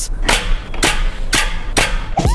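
Giant compressed-air Nerf blaster firing: a series of four sharp blasts about half a second apart.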